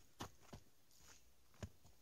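Near silence with three soft, short footfalls on a leaf-covered forest path.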